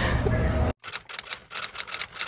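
Typewriter key clicks, a rapid irregular run of sharp strikes keeping pace with text typing onto the screen, starting about a second in. Before them, outdoor street noise with a low rumble cuts off abruptly.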